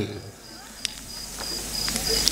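A cricket chirping in a high, evenly pulsing trill, with a short sharp click about a second in.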